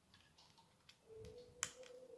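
Faint small clicks of a tiny screw and screwdriver being handled against a laptop's metal hard-drive caddy, with one sharp click past the middle. A faint steady hum starts about a second in.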